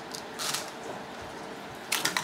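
Light clicks and a short rattle about half a second in as BBs are spooned into a plastic funnel over a test tube, followed by sharper clicks of the funnel and plastic labware being handled near the end.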